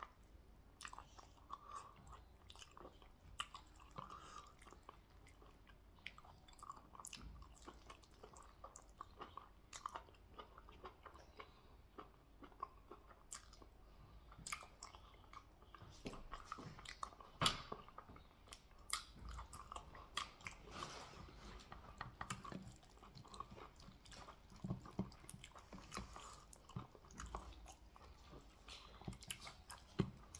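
Close-up chewing and biting of stewed goat head meat eaten by hand, a run of soft, irregular wet clicks with the loudest about two-thirds of the way through.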